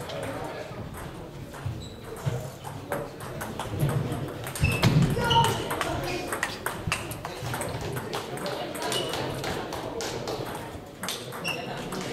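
Table tennis balls clicking off bats and tables in quick irregular succession, the near rally's hits overlapping those from other tables in a large echoing hall.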